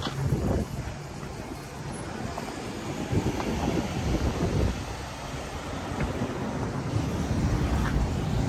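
Wind buffeting the microphone, uneven and gusty, over city street traffic.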